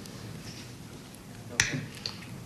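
Quiet studio room tone, then a single sharp click about one and a half seconds in, followed by a brief soft vocal sound.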